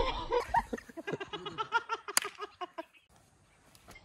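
People laughing hard in quick, rapid bursts, which stop abruptly about three seconds in, leaving near quiet.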